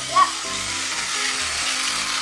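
Several battery-powered Tomy toy trains running on plastic track, a steady whirring hiss.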